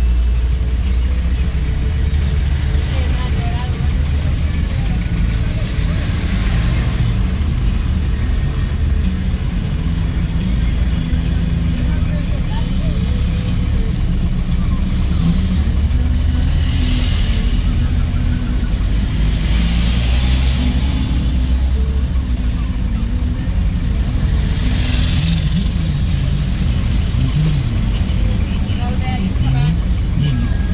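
Car cabin noise while driving in traffic: a steady low engine and road rumble, with a few brief swells of hiss from passing traffic.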